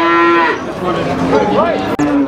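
Cattle mooing: one loud, steady low call of about half a second, with a sudden start.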